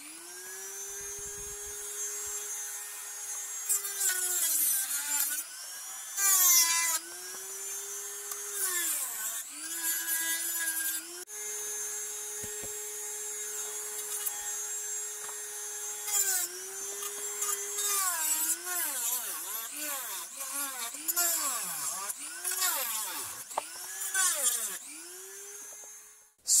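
Handheld rotary tool (Dremel-type) running at high speed with a steady whine while cutting and grinding the corners off plastic vacuum-motor mounts. Its pitch dips each time the bit bites into the plastic and comes back up as it is eased off. The dips come thick and fast near the end.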